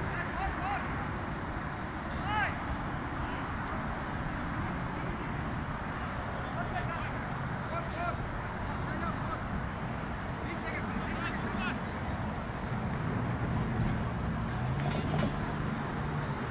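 Short, indistinct distant shouts and calls from players on the field, over a steady low outdoor rumble that swells near the end.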